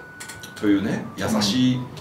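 Men talking at a table, with a few faint clicks just before the speech resumes.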